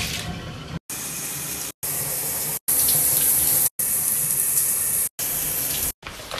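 Water running from a bathtub tap into the tub, a steady hiss heard in several short pieces broken by abrupt cuts, loudest about three seconds in.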